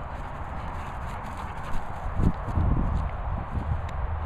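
Wind buffeting the microphone: a steady low rumble that turns gustier, with irregular low thumps, from about halfway through.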